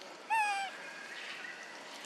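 A young macaque gives one short coo call, about half a second long, with a slight rise and then a falling pitch, a little after the start.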